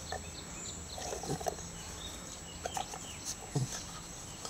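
A long-haired dachshund nosing and mouthing a rubber ball in the grass, making a few short, irregular noises with its nose and mouth; the loudest comes about three and a half seconds in.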